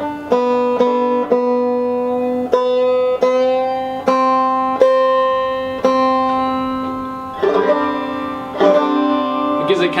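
Five-string banjo being tuned: the second string is picked again and again beside a neighbouring string, each note ringing out, while its peg is turned so the pitch creeps slowly upward, taking the string from B up a half step to C for sawmill (G modal) tuning. Near the end comes a quicker flurry of picked notes.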